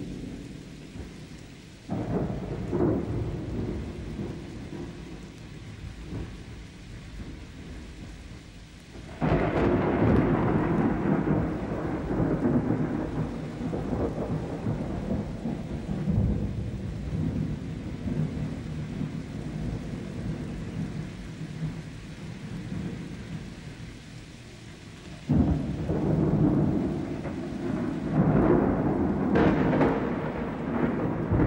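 Thunderstorm: steady rain with rolling thunder. Peals break in suddenly about 2 s, 9 s, 25 s and 28 s in, and each rumbles on for several seconds.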